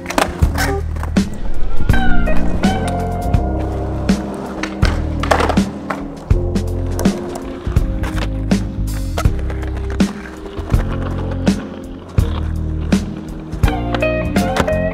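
Skateboards on concrete: wheels rolling, with many sharp clacks of boards popping and landing, over background music with a steady bass line.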